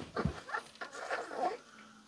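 Dog giving a few short, soft whimpers in the first second and a half.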